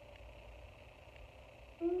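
Near silence, room tone only, for most of the stretch; near the end a person's voice starts with a steady, held note.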